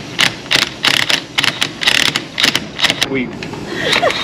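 A cordless DeWalt driver on a long extension bar is fired in short bursts, several a second, at a stubborn bolt in a sailboat's shaft-log flange. Each burst is a sharp rattle, and the bolt does not come out.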